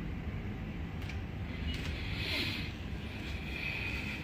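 Steady low rumble of background ambience, with a faint brief hiss about two seconds in.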